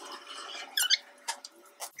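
A brief high squeak about a second in, then two light clicks, as scissors and cut paper are handled and set down on a wooden table.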